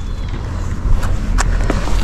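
A few short, sharp clicks and knocks from handling a mountain bike at its front wheel hub as the wheel is about to come off for an inner-tube change, over a steady low rumble.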